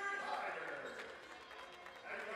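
Basketballs bouncing on a gym court in an echoing hall, with music and voices over the arena sound that dip in level toward the end.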